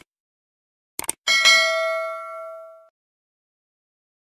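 Subscribe-button animation sound effect: a quick double mouse click about a second in, then a single notification-bell ding that rings out with several clear tones and fades away over about a second and a half.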